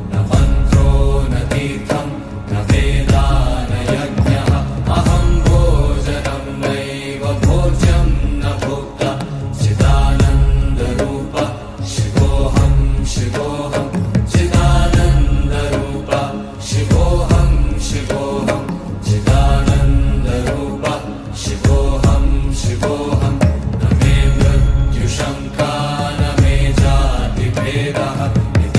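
Devotional Sanskrit hymn to Shiva, chanted by a voice over a musical backing with a heavy low beat that comes about every two seconds.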